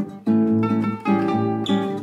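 Choro played on cavaquinho and acoustic guitar: strummed chords under a plucked melodic line, the notes changing about twice a second, with no voice.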